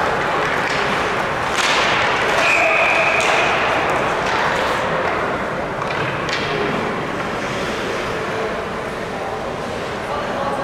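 Ice hockey rink noise: a steady arena and crowd murmur with a few sharp knocks of sticks and puck. A referee's whistle is blown once, briefly, about two and a half seconds in, stopping play.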